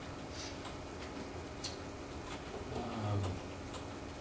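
Light, irregular clicks and ticks over a steady low room hum.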